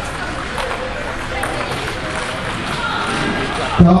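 Background hubbub of a busy indoor table tennis hall: many indistinct voices, with a few light clicks of balls striking tables. A public-address announcer's voice cuts in just before the end.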